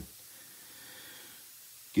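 Faint, steady hiss of background room tone, with no distinct sound event.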